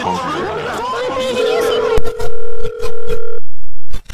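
Several overlapping, pitch-warped voice clips at once. About a second and a half in, a steady beep-like tone comes in and holds for about two seconds. From about two seconds in, the sound becomes loud and clipped, chopped into stuttering bursts that cut in and out.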